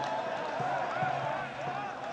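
Outdoor football-ground ambience: a steady background hum with faint, distant shouting voices from the pitch.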